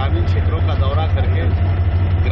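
A man speaking over a loud, steady low hum that runs without a break.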